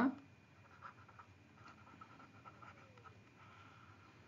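Faint scratching and light ticks of a stylus writing on a pen tablet, a few short irregular strokes.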